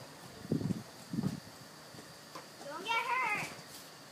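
A child's drawn-out, wavering high-pitched cry lasting under a second, about three seconds in, preceded by two short dull thumps.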